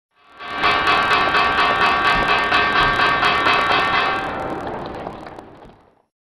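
Short electronic outro jingle for a logo card: a sustained chord of many steady tones with a rapid shimmer, swelling in quickly, holding for a few seconds, then fading out over the last two seconds.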